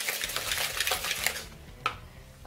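Wire hand whisk beating egg and sugar in a plastic mixing bowl: rapid scraping, clicking strokes that stop about a second and a half in, followed by a single sharp click near the end.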